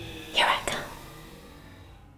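A short breathy whisper about half a second in, followed at once by a sharp click, then a faint fading tail.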